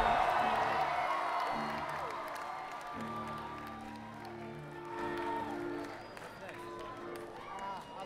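A live concert crowd cheering, whooping and clapping between songs, the cheering dying away, with a few held notes from the band's instruments sounding underneath.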